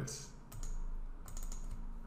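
Computer keyboard keys tapped a few times, short separate clicks, as a number is typed into a field.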